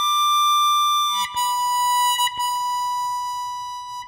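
Solo instrumental music: a single reedy wind instrument playing a slow melody in long held notes, one note for about a second, then a slightly lower note held for nearly three seconds.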